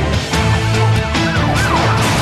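Dramatic theme music with a steady beat, overlaid by a siren whose pitch sweeps quickly up and down several times in the second half.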